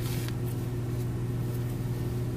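Steady low background hum, even throughout, with no other clear sound over it.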